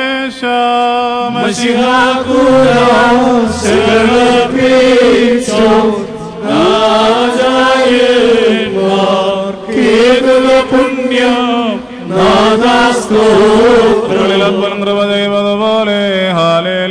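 West Syriac liturgical chant: a voice chanting a slow, wavering melody in phrases of a second or two, with brief breaks for breath.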